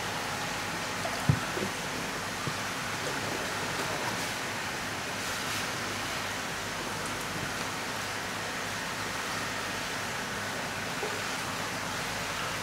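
Steady rushing hiss like running water, with one sharp knock a little over a second in.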